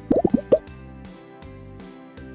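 Light background music with a steady beat, and right at the start a quick run of four loud cartoon 'plop' sound effects, each a short sweep in pitch, all within about half a second.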